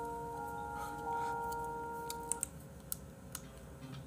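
Soft background music with several long held notes that fades out a little over halfway through, followed by a few sharp clicks from the computer as the page is scrolled.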